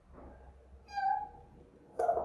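Whiteboard marker squeaking against the board while a curve is drawn: one short, high squeak about a second in.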